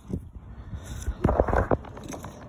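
Handling noise of a hand and phone rubbing and knocking against the plastic trim around a van's washer bottle filler neck, with a cluster of short scrapes and knocks a little over a second in.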